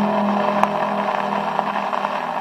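Steady hiss and crackle of a 78 rpm shellac record's surface noise as the last viola and guitar chord fades away, with one sharp click about two-thirds of a second in.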